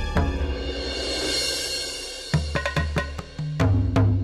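Dramatic TV-serial background music: a swelling cymbal wash, then from about halfway a series of sharp drum hits over deep bass notes.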